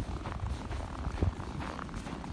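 Footsteps crunching on a snowy sidewalk, with a continuous low rumbling noise underneath.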